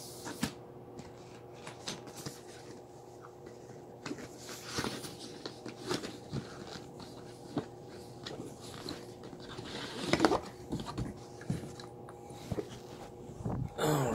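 Handling noise of a product box being unpacked: scattered clicks, knocks and rustles, with a louder rustle about ten seconds in, over a faint steady hum.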